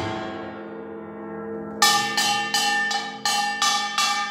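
A samul nori ensemble stops together and its gongs ring on and fade. About two seconds in, a kkwaenggwari (small hand-held brass gong) plays alone, sharp ringing strokes about three a second, while the big jing gong's low ringing lingers underneath.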